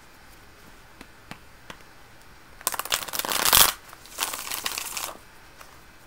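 A deck of tarot cards being shuffled: a few light taps, then two bursts of rapid card flutter about a second long each, the first the louder.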